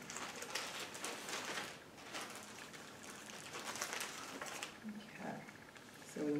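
A thin clear plastic bag crinkling and rustling on and off as small decorations are picked out of it by hand.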